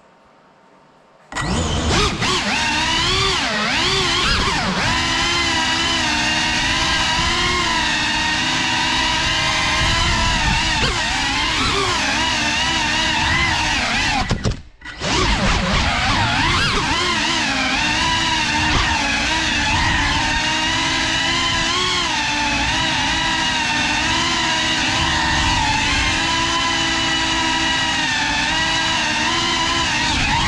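Cinelog 35 FPV cinewhoop on 6S: four brushless motors and ducted props buzzing loudly, starting suddenly about a second and a half in. The pitch wavers up and down with the throttle, cuts out for a moment about halfway through and comes straight back.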